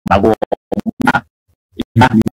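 Speech broken into short stuttering fragments, cut off abruptly by dead-silent gaps, giving a choppy, scratch-like sound with a longer silence about a second and a half in.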